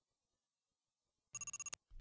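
Silence, then about 1.3 s in a brief high, bell-like electronic chime that trills rapidly for under half a second: a transition sound effect before the next clue card.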